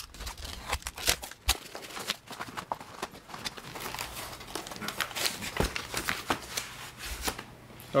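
A knife slitting a cardboard record mailer, then hands tearing the cardboard and paper open, with irregular crackles and rips throughout.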